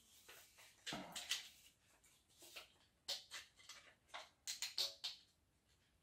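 Faint handling noises: a few short plastic clicks and paper rustles, spread out with gaps between them, as a 3D-printed rubber-band paper-plane launcher is fiddled with after its rubber band has caught on one side.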